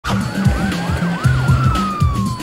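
Police siren yelping in quick rising-and-falling sweeps, about three a second, with a second siren tone sliding slowly down in pitch, over music with a heavy beat.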